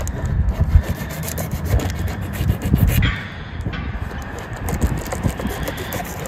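Serrated knife sawing through a cardboard box in quick back-and-forth strokes, cutting the box open. The strokes pause briefly about halfway through, over a steady low rumble.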